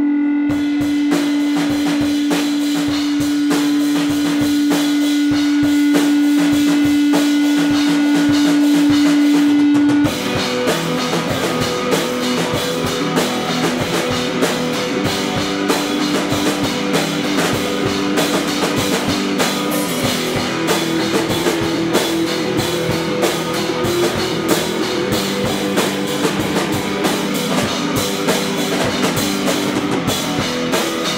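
Live screamo band playing: a single note rings steadily over the drums for about ten seconds, then the full band comes in with electric guitar and fast, busy drumming.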